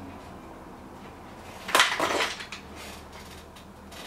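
A short clatter about two seconds in, a sharp knock followed by a second rattle, over faint steady room hum.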